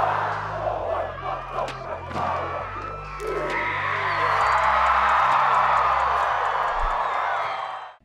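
A team of football players shouting a haka in chorus over background music with a deep bass line, then a long loud crowd roar from about three and a half seconds in that cuts off suddenly just before the end.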